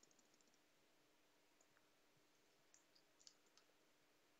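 Near silence with a few faint computer keyboard clicks as a line of text is typed over, plus a faint steady hum.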